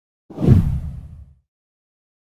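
A single whoosh sound effect with a deep low rumble, starting about a third of a second in and fading out by about a second and a half.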